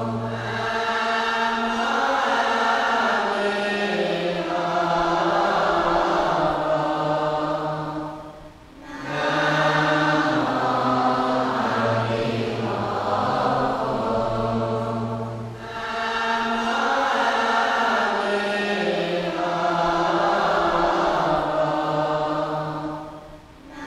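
Slow Buddhist chanting by a group of voices, long drawn-out phrases sung to a melody, with a brief pause about every seven seconds.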